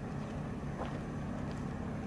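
Steady low rumble of wind on the microphone of a camera carried outdoors, with a few faint footfalls on a dirt path.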